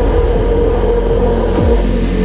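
Background music: sustained held tones over a low repeating beat that falls in pitch each time.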